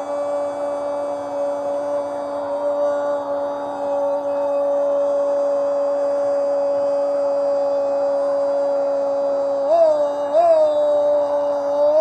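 Radio football commentator's long goal cry, a single shouted 'gol' held on one steady note for the whole stretch, wavering twice in pitch near the end. It announces that a goal has just been scored.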